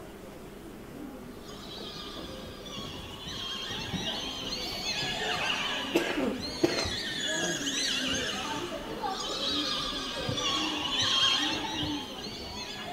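Several high-pitched, squeaky voices chattering and squealing over one another like small creatures, starting about a second and a half in and getting louder and busier from about four seconds. A couple of sharp knocks sound about six seconds in.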